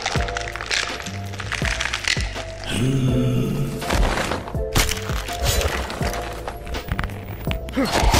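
Dramatic background score with held tones, overlaid with a series of sharp crack and impact sound effects of punches landing.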